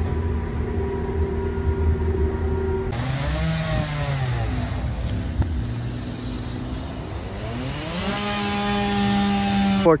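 A train ride with a steady low rumble and hum for about three seconds. Then a gardeners' power tool runs with a loud hiss, its pitch dropping, then rising again and holding steady near the end; the noise is loud enough to stop talk.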